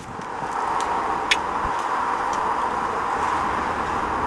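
Steady hiss of road traffic on wet tarmac, with a few faint clicks.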